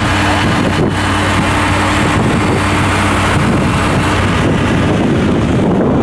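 Fire truck aerial ladder's engine running steadily while the ladder is worked from its control panel, a loud even drone with a low hum under it.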